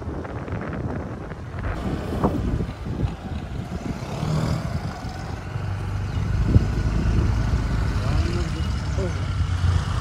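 Motorbike engine running on the move, a low steady drone that gets a little louder in the second half.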